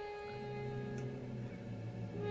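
Film score music with sustained notes: a high held note fades out and low held notes come in just after the start.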